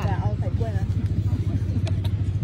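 A steady low rumble, with a woman's few words at the start and a faint click near the end.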